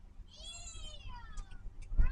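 A single high-pitched, meow-like vocal sound lasting about a second and a half, sliding down in pitch, most likely the person voicing delight at a mouthful of ice cream.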